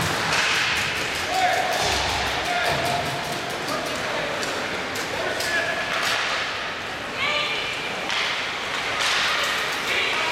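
Ice hockey play in an indoor arena: repeated sharp clacks and knocks of sticks and puck, with thuds against the boards, echoing in the hall. Spectators' voices run underneath, with a short shout about seven seconds in.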